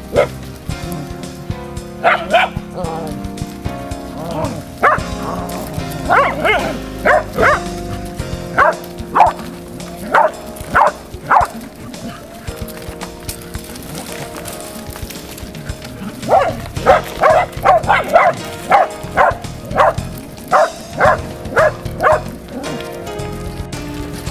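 Dogs barking in short sharp barks, in runs: a few about two seconds in, a spaced run in the middle, and a quicker run of about two barks a second near the end, over background music.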